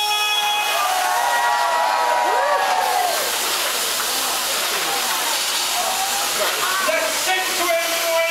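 Loud steady hiss of steam jets venting from the Man Engine, a giant mechanical miner puppet, with a crowd's voices and calls rising and falling over it.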